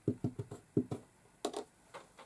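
About eight light, quick taps and knocks in a second and a half, as a size 5 watercolour round brush is wetted and flicked.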